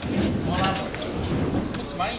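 Indistinct chatter of several people talking over one another in a large hall.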